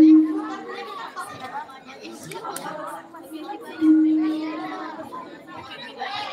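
Two percussion strikes, one right at the start and one about four seconds in, each ringing on for about half a second on one low note, over background chatter of voices.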